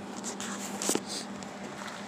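Rustling handling noise from a phone being moved, with a single sharp click about a second in, over a steady low hum.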